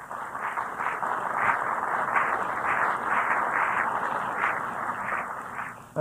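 Audience applauding, heard through a muffled, narrow-sounding cassette recording. The clapping holds steady and fades out near the end.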